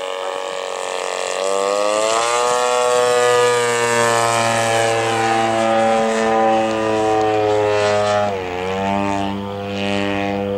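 Hangar 9 Sukhoi RC aerobatic plane's 85cc two-stroke gas engine and propeller running hard in flight. The pitch climbs about a second and a half in, holds steady, then dips briefly near the end before coming back up.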